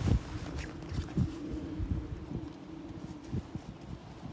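Wind rumbling on the microphone, with a few short rustles and flaps of a military poncho being pulled over a bivy bag on the ground.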